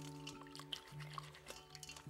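Soft background music of held, steady notes, with faint drips and light splashes of water from hands working herbs in a bowl of water.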